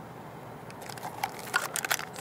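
Plastic packaging crinkling and crackling as it is handled, in an irregular run of crackles starting about a second in.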